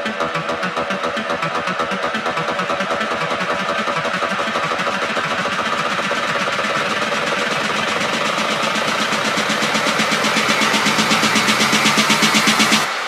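Techno build-up: a buzzy, engine-like synth pulsing about four times a second, growing steadily louder toward the end.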